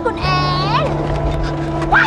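A car engine runs with a steady low drone that starts about a quarter second in. It sits under dramatic background music with swooping high notes.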